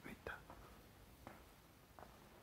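Faint whispering in near silence, with a few soft clicks.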